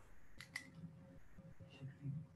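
Near silence with faint room tone, broken by two quick, faint clicks about half a second in.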